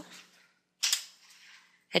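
A single sharp click about a second in, a computer key press submitting the search, with a short fading tail.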